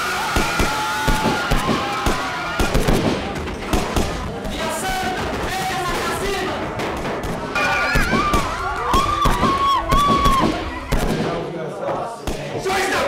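Gunfire, many shots in quick succession, mixed with voices crying out and background music. The shots are densest in the first few seconds, and higher wailing voices come up later.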